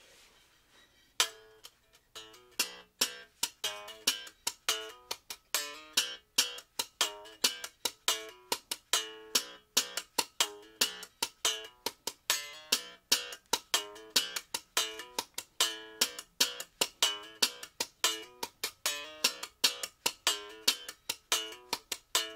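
Strandberg Boden NX 7 seven-string electric guitar played with a percussive slap-and-pull funk rhythm: short, sharp, clipped notes at about four a second, starting about a second in.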